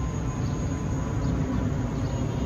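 Steady low rumble of outdoor background noise, with a faint steady high tone above it.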